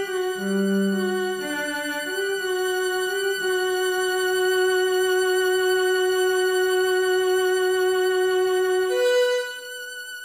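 Solo cello with a string orchestra: a few short notes, then a long high note held with vibrato for several seconds, stepping up to a higher note near the end and fading.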